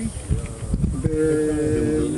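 A person's voice: brief faint murmurs, then a single drawn-out hesitation sound held on one steady pitch for about a second, running straight into speech.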